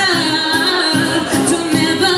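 A woman singing a melodic line into a microphone over a strummed acoustic guitar, in a live acoustic song.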